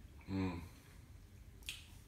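A man's short wordless 'hmm' as he mulls over the taste of the drink, then a single sharp click, like a lip smack, about a second and a half later.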